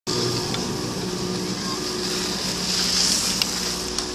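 Skis sliding over packed, groomed snow: a steady hiss that swells about three seconds in, over a steady low hum.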